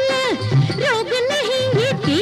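Instrumental passage of a 1970s Hindi film song: a solo melody line with quick ornamental bends and dips over a steady low drum beat.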